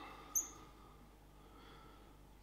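A single short, high-pitched squeak about a third of a second in, then faint room tone.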